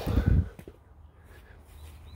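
A brief, loud low rumble on the phone's microphone in the first half second, then only a faint steady low rumble.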